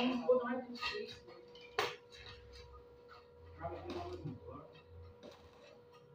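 Electric arc welding on a steel angle-iron rail: the arc crackles briefly at the start, then come scattered sharp metallic clicks and taps.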